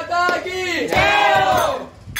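A group of voices shouting a devotional chant together in unison, with a second, long drawn-out call that drops in pitch as it ends.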